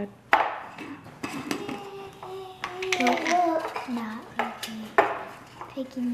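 Screw lid being twisted off a glass jar and set down on a stone countertop, with several sharp clinks of lid and glass, the loudest about five seconds in. A child's voice hums or murmurs faintly underneath.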